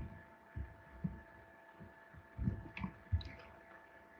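Stylus strokes and taps on a pen tablet while handwriting digits: several soft, irregular low thumps over a faint steady electrical hum.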